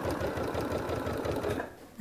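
Janome sewing machine with a walking foot stitching quilting lines through a quilt's layers, running steadily at speed, then stopping about one and a half seconds in.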